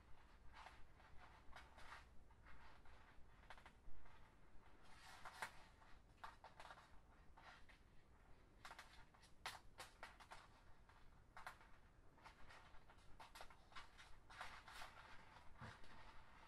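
Faint rustling and light clicking of flat plastic lanyard strings being threaded and pulled through a stitch by hand, with one sharper tap about four seconds in.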